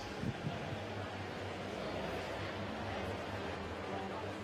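Steady background noise of a large hall, an even hiss with a faint low hum and no distinct events.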